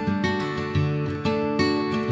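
Background music led by a strummed acoustic guitar playing chords, with a fresh strum about every half second.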